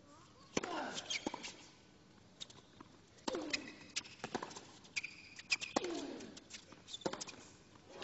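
A tennis rally on a hard court with the crowd hushed: a string of sharp racquet-on-ball strikes and bounces, some short high shoe squeaks, and a player's grunt that falls in pitch right after three of the strikes.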